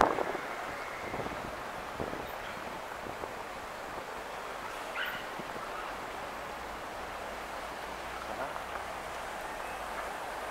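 Night-time city street ambience: a steady wash of distant traffic and the voices of passers-by, with a brief faint rising tone about five seconds in.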